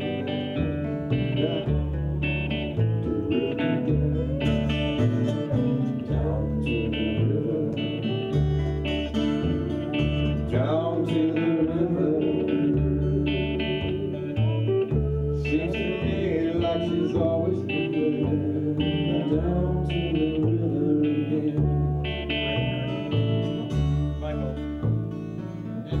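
Live roots band playing an instrumental break: acoustic and electric guitars over upright bass, with a lead line that bends in pitch about halfway through.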